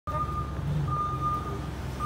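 Vehicle reversing alarm giving two long beeps at one steady pitch, over the low rumble of an engine running.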